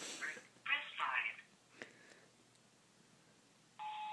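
Voicemail playback over a phone's speakerphone: a thin, tinny voice for about a second and a half, a pause, then a single steady beep near the end.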